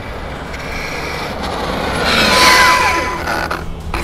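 Losi LST 3XL-E 1/8 electric RC monster truck on a high-speed run over asphalt: the rushing tyre and brushless-motor drivetrain noise swells to a peak a little past halfway and then fades, as a whine drops in pitch while it passes.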